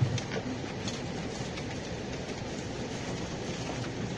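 Steady background rumble and hiss with a few faint clicks, and a short knock right at the start.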